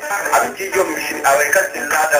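A man singing a melodic line over instrumental backing: a recorded West African song.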